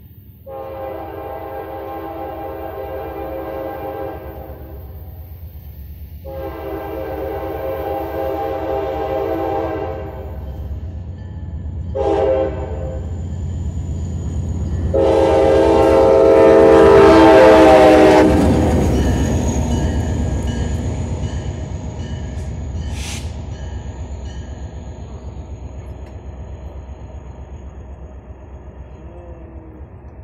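CSX freight locomotive horn sounding the grade-crossing signal: two long blasts, a short one and a final long blast, the signal for approaching a public crossing. The last blast drops in pitch as the locomotive passes and is the loudest moment. The train's rumble then slowly fades.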